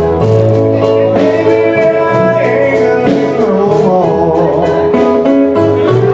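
Live blues band playing: electric guitar, bass and drums, with bending guitar notes in the middle.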